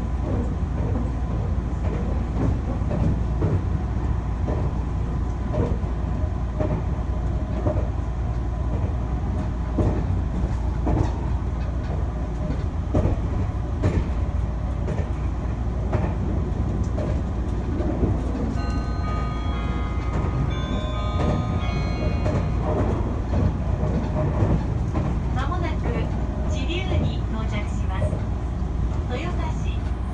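Interior running noise of a Meitetsu limited express train: a steady low rumble from the wheels and rails, with scattered clicks. About two-thirds of the way through comes a short run of high electronic tones, and near the end a recorded station announcement begins.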